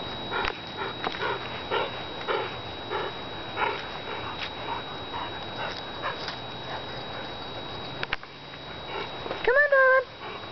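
Dogs in rough play making a string of short grunting sounds, a few each second, then a high drawn-out whine near the end.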